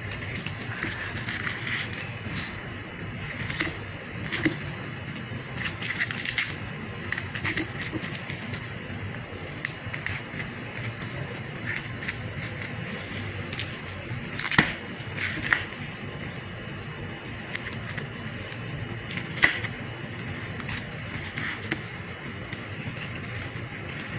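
Boning knife working through a raw lamb leg: scattered sharp clicks and scrapes of the blade on bone and the cutting board, the loudest about halfway through and again a little later, over a steady background hum.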